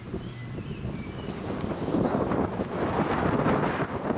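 Wind buffeting the microphone: an uneven low gusting noise that grows stronger about halfway through.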